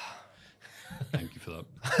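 Men's quiet vocal sounds and breaths at close microphones, breaking into laughter near the end.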